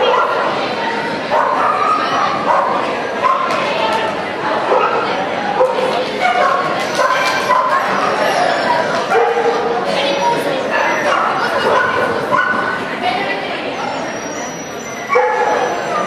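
A dog barking and yipping again and again as it runs an agility course, with people's voices mixed in.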